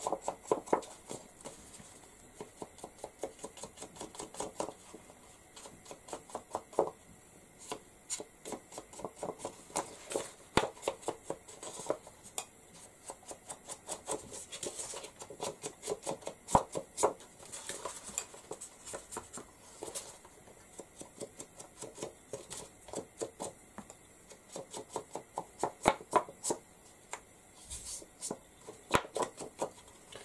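Ink blending brush dabbing ink onto the edges of a paper card: quick runs of light taps with brief pauses between them.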